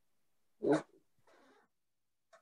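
A single short cat-like call from a pet, lasting about a quarter second just under a second in, followed by a faint brief rustle.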